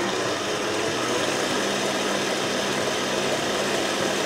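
Electric stand mixer running steadily, its whisk beating in a stainless steel bowl: an even motor whir with a low hum underneath.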